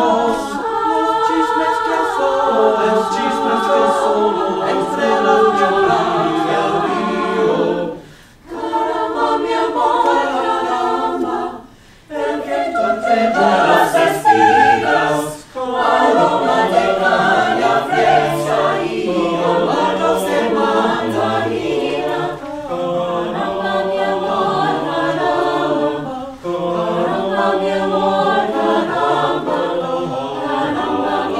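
Mixed-voice a cappella choir singing in parts, men and women together, with short breaks in the singing about eight, twelve and fifteen seconds in.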